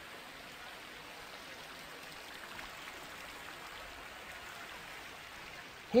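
A steady, even hiss with no pitch or rhythm.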